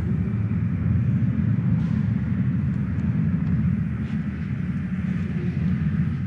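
A loud, steady low rumble with no clear pitch.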